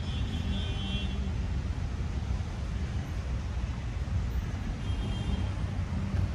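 Steady low rumble of city road traffic, with faint high chirps in the first second and again near the end.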